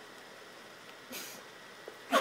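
Quiet room with a faint steady hiss and one brief soft noise a little over a second in.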